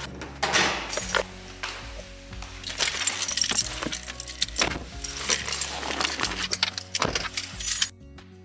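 Handling noise of someone getting into a car and setting a bag down in the cabin: a busy run of clicks, knocks and rustling over background music. The handling noise cuts off suddenly at the end, leaving only the music.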